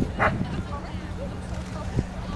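A dog barks once, sharply, about a quarter second in, over faint background voices. A low steady hum comes in shortly after.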